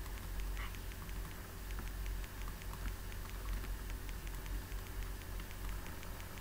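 Faint, light clicks and taps, several a second, from a pen writing by hand on a digital tablet, over a steady low electrical hum.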